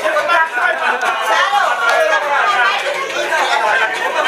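Several people talking at once: lively, overlapping group chatter.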